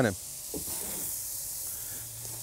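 Marinated steaks sizzling on a hot gas grill: a steady, high-pitched hiss.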